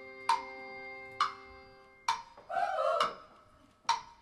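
A live band's held chord ringing steadily, then fading out about halfway through, over a sharp, evenly spaced tick a little under once a second. Brief voices murmur near the end as the chord dies away.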